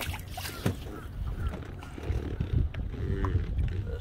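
A Secchi disk dropped over the side of a boat splashes into the lake in the first second, followed by an uneven low rumbling noise.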